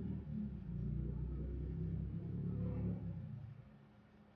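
Low, irregular rubbing and rustling of clothing against a clip-on microphone as a makeup brush is worked over the cheekbone. It dies away a little before the end, leaving quiet room tone.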